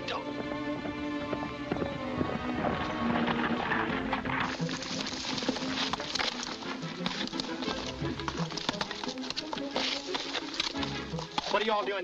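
Film score music with horses' hoofbeats. The hoofbeats turn into a dense galloping clatter from about four seconds in.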